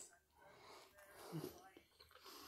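Near silence: faint breathing through the nose while chewing a mouthful of sub sandwich.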